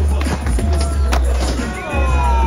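Music with a heavy, steady bass laid over skateboard sounds: urethane wheels rolling on asphalt, with a sharp clack of the board about a second in.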